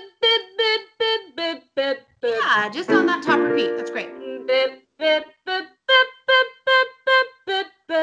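A woman's voice singing short staccato 'bup'/'bip' syllables in a vocal warm-up exercise, about three a second. In the middle a sliding sung passage and a held piano chord sound before the staccato notes resume.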